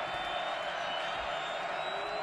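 Stadium crowd noise: a steady din of many voices in the stands.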